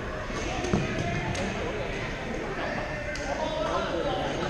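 Badminton rackets striking shuttlecocks: several sharp hits over steady background chatter in a large sports hall, the loudest under a second in.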